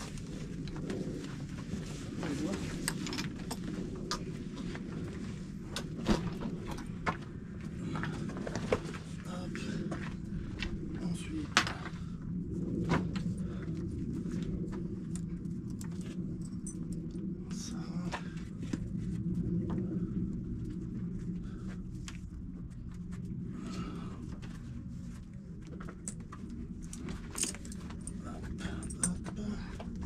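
Metal buckles and rings on a donkey's pack saddle clinking and jingling in scattered sharp clicks as the straps are undone and the saddlebags lifted off.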